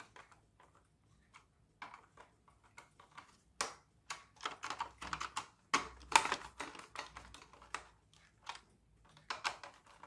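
Screwdriver working screws in a hard plastic toy car shell: irregular small clicks, taps and scrapes of metal on plastic, busiest and loudest through the middle.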